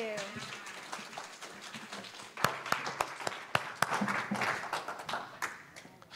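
A small congregation applauding in a room, a dense patter of claps with some voices mixed in and a few louder, sharper knocks about halfway through.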